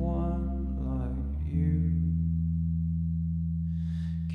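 A live band in a quiet, held passage: low sustained chords ring out, with a new chord struck about a second and a half in and held steadily until the end.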